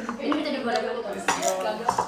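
Several short, sharp clicks and clinks of small hard objects, about four in two seconds, with soft talk between them.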